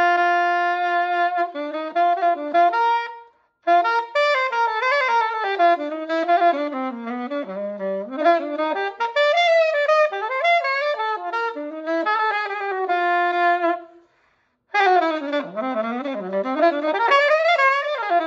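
Conn 6M 'Naked Lady' alto saxophone with double-socket underslung neck, fresh from a clean, oil and adjust, played solo and unaccompanied: it opens on one long held note, then runs through quick melodic phrases up and down the range, dipping into the low register, with two brief breaks for breath.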